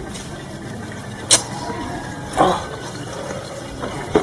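Steady background noise with faint voices, broken by a sharp click a little over a second in and a short, louder burst about a second after it.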